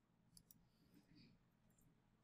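Near silence broken by a faint computer mouse click, two quick ticks close together about half a second in.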